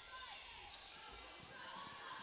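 Faint, steady ambience of an indoor volleyball arena during play, a low even hiss of crowd and room noise.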